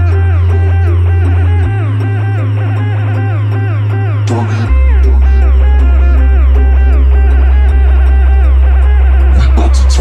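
Bass-boosted trap music: long, very loud sub-bass notes that step to a new pitch twice, under a busy repeating melody of short falling notes.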